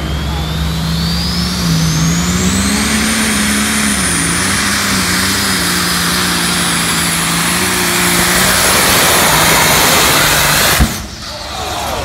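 Turbocharged diesel pulling tractor under full power down the track, its turbo whine rising over the first few seconds and then holding high above the engine. Near the end a single sharp bang, after which the engine sound falls away: the engine has let go and the tractor is on fire.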